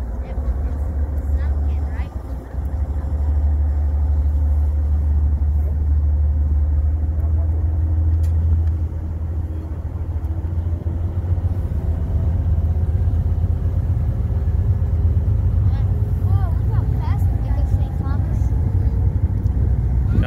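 A passenger ferry under way: the steady drone of its engines under heavy wind rumble on the microphone, out on the open deck. Faint voices come through near the end.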